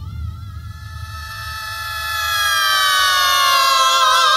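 Passage from a 1971 rock recording: a single sustained high tone with several overtones slides slowly and smoothly downward in pitch while swelling louder.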